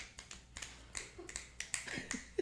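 Finger snapping in approval: a run of quick, uneven snaps.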